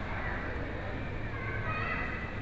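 Busy supermarket ambience: shoppers' background chatter over a steady low hum, with a brief high, wavering call in the second half.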